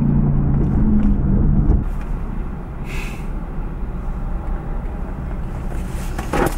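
Car engine and road noise heard from inside the cabin while driving: a steady engine drone for the first two seconds, then it eases off to a lower rumble.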